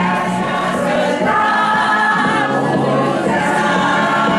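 A group of voices singing together in chorus, a steady held song with no pauses.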